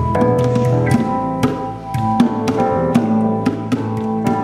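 A small live band playing an instrumental passage with no singing. Sustained keyboard chords and an electric bass line run under regular hand-drum strikes from bongos.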